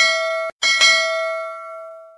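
Notification-bell sound effect of a subscribe animation, rung twice. The first ring is cut off about half a second in. The second rings on and fades away.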